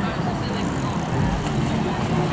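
A large group of cyclists riding past, with the indistinct chatter of riders over a steady low rumble of street noise.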